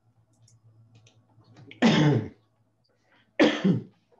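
A person coughing twice, about a second and a half apart.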